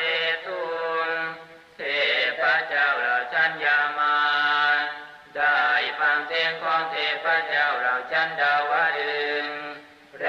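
Buddhist chanting: a voice recites in long, melodic, sung phrases, with brief breaks about two seconds and five seconds in.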